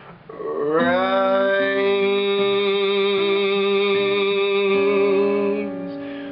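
A man's voice singing one long held note, sliding up into it about half a second in and holding it with a slight waver, over picked notes on an acoustic guitar. The voice fades away shortly before the end.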